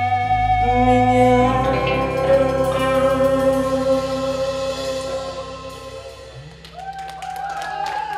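Live band ending a song: singing over a held chord that fades out over several seconds. Near the end come new voices and a few hand claps.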